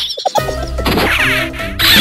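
Background music with edited-in comic sound effects: a sudden crash-like hit at the start, then music with warbling, sweeping glides near the middle and the end.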